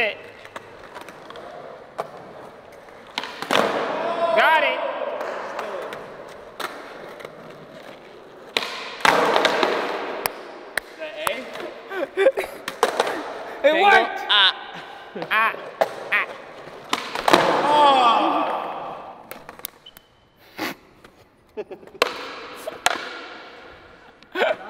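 Skateboards knocking and clattering on a concrete floor, with sharp pops and landings scattered through, between bursts of voices.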